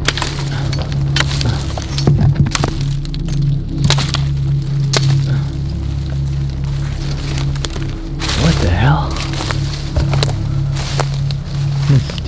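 A steady low background-music drone throughout, over many sharp cracks of twigs and dry brush being stepped on and pushed through.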